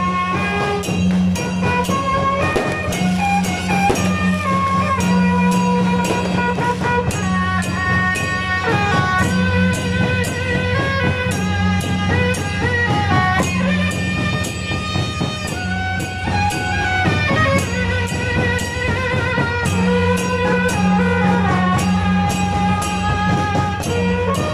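A brass-and-drum street band of saxophones, trumpets and snare drum playing a lively tune over a steady drumbeat.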